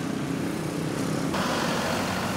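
Street traffic: vehicle engines running steadily with a low hum, and a rise in road hiss a little past halfway.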